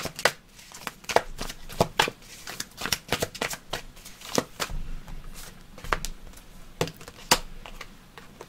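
A deck of tarot cards being shuffled by hand: a run of irregular, sharp card clicks and snaps.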